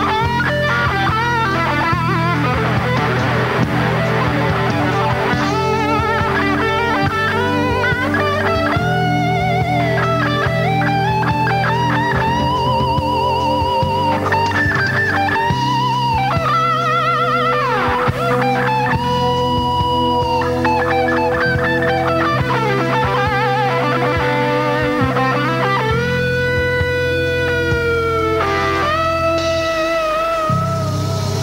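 Live rock band playing a slow instrumental passage: an electric guitar lead holds long notes with a wavering vibrato over steady bass notes and drums.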